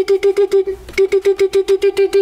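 Marker tip tapped rapidly against a blackboard to draw a dotted ring around a term. The taps come about eight a second, in two runs split by a short pause just under a second in, and each tap is a hollow knock at the same pitch.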